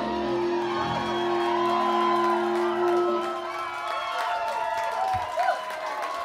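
A live rock band's final chord rings out on electric guitar and sustained tones, stopping about three seconds in, while the audience cheers and whoops.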